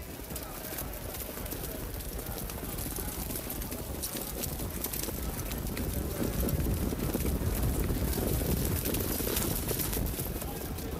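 A field of harness horses pulling sulkies behind a mobile starting gate, their hoofbeats and wheels on a wet track building steadily louder as they come up to the start.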